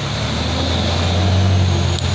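A steady, low motor drone with a hiss over it, growing slightly louder partway through.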